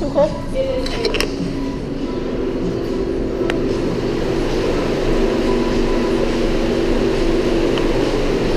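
Steady hum of a walk-in flower cooler's refrigeration unit, growing louder a couple of seconds in, with a few sharp clicks in the first few seconds.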